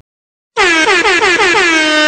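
Cartoon air horn sound effect: after half a second of silence, a quick stuttering run of short blasts, each sagging in pitch, runs into one long steady blast.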